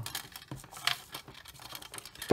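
Handling noise from hands moving power cables and a metal-cased Mean Well HLG-100H-48A LED driver over bubble-wrapped LED boards: irregular light clicks and rustles, the sharpest a little under a second in.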